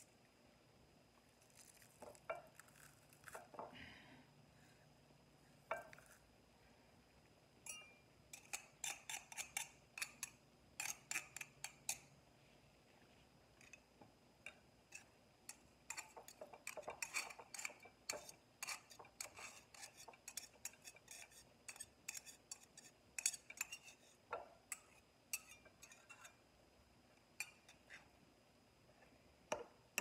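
Metal garlic press clicking and tapping against a glass baking dish as garlic cloves are crushed and knocked out: scattered clinks at first, then two long runs of quick clicks, with a few single ticks near the end.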